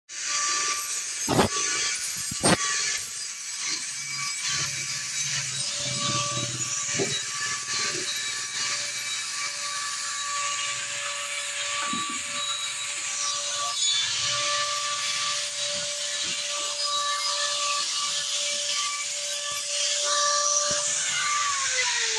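A power tool's electric motor runs with a steady whine over a rough grinding hiss, and two sharp knocks land in the first few seconds. Near the end the whine drops in pitch as the motor winds down.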